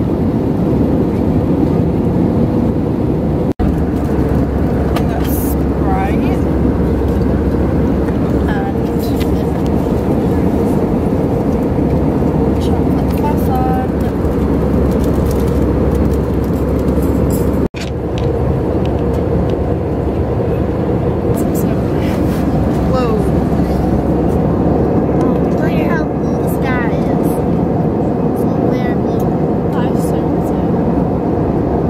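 Steady, loud airliner cabin noise in cruise flight, the rumble of engines and airflow. Faint voices can be heard over it.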